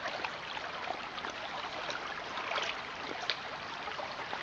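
Shallow creek water babbling and trickling close by, with many small splashes and drips as a dog wades through it.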